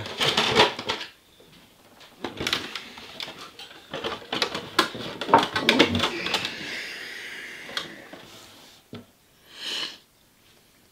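Plastic RC buggy body shell being handled and fitted onto a 1/8 buggy chassis: irregular clicks, taps and rattles of plastic on the chassis and table, thickest in the first few seconds, easing into softer rustling, with a short burst of noise near the end.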